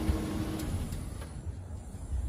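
Low vehicle rumble with a steady hum that stops about two-thirds of a second in.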